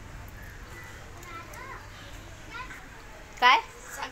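Children's voices: faint background chatter, then one short, loud, high-pitched child's call near the end.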